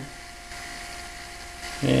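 Bedini pulse motor running: a steady high whine over a low, fast, even buzz.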